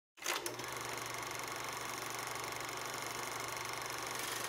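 A rapid, evenly repeating mechanical clatter that starts with a click just after the start and runs on steadily.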